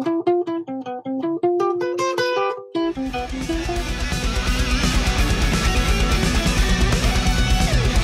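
Acoustic guitar picking a run of single notes, an exercise across four strings. About three seconds in, this gives way to loud heavy-metal band music with distorted electric guitars and a pounding low end.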